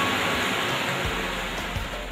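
A steady hiss of noise with no clear pitch, easing off slightly toward the end.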